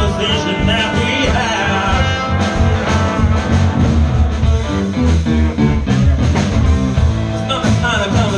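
Small band playing a blues number live: electric guitar, electric bass and drum kit with a steady beat, a wavering lead line over the top in the first couple of seconds.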